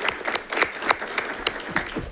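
Audience and board members applauding: a short round of individual hand claps.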